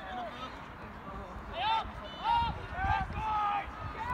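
Distant shouted calls from people on a soccer field, several short shouts about halfway through and near the end, with a low rumble underneath.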